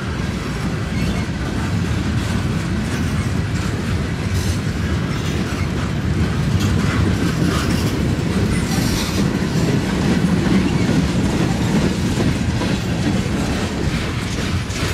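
Freight cars of a passing train rolling by at close range: a steady rumble of steel wheels on rail with repeated clickety-clack over the rail joints, growing a little louder midway.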